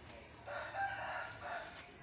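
A rooster crowing once, faintly, starting about half a second in and lasting just over a second.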